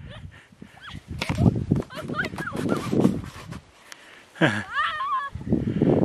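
People laughing, with bursts of high, rapidly repeated giggles about two-thirds of the way through.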